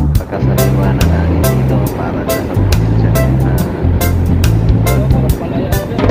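Music with a steady beat and a bass line moving in steps between held notes.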